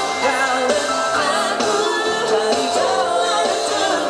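Live pop band performing: singers singing a melody over electric guitars, bass guitar and a drum kit.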